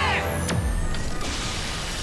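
Cartoon robot sound effects: mechanical clicking and ratcheting of moving robot parts, with a sharp click about half a second in.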